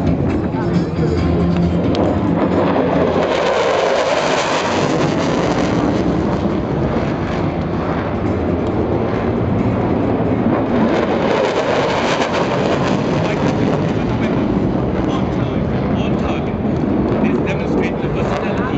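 Loud, continuous rushing jet-engine noise from F-16 fighters passing over the airfield, swelling about three seconds in and staying loud. Background music with steady tones fades out in the first two seconds.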